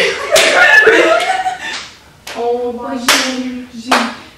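Young women's voices calling out after a dance, one held vocal note in the second half, with sharp hand smacks or claps, one shortly after the start, one about three seconds in and one near the end.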